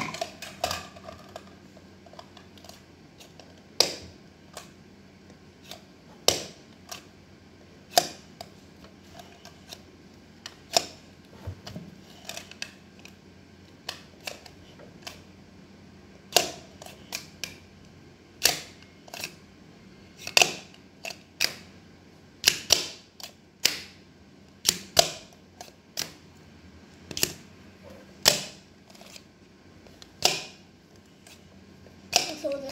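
Sharp plastic clicks from a toy tool being pressed and worked against a plush toy. They come irregularly, every second or two at first and more often in the second half, up to about two a second.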